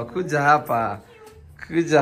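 A voice calling 'come' in a long, drawn-out sing-song pitch, then a short lull before more speech.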